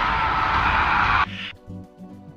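Movie-scene soundtrack: a loud, harsh, sustained scream over dramatic music, cut off abruptly a little over a second in.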